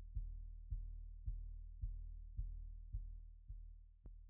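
Low synthesized bass pulse repeating about twice a second over a steady low drone, fading out.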